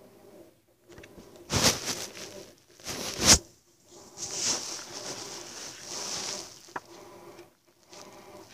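Handling noise as a CD booklet is taken out and opened: two sharp knocks about one and a half and three seconds in, then paper rustling, with a small click near the end.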